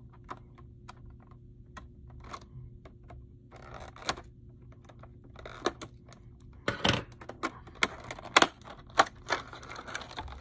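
Clear plastic swimbait package being handled and opened: scattered sharp clicks and crinkles. They are sparse at first, then come thicker and louder in the second half, with the loudest snaps about seven and eight and a half seconds in.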